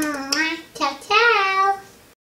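A child's high-pitched voice singing two drawn-out phrases with a short break between them, fading out near the end.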